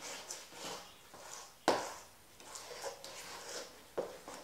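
Hand mixing a wet, sticky sourdough dough in a stainless steel bowl: irregular soft squelching and scraping, with a sharp knock about one and a half seconds in and another at the end.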